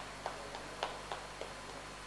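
Light, scattered hand-clapping from a few people, irregular single claps that thin out, over a low steady hum.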